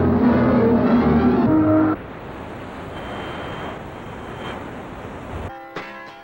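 Music plays for about two seconds and cuts off suddenly, leaving the steady rushing noise of a car driving. Plucked guitar music starts near the end.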